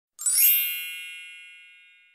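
A bright, shimmering chime sound effect: a single ding that strikes about a quarter second in and rings away slowly.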